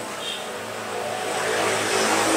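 Vehicle noise in the background, a steady rush with a low hum, growing gradually louder.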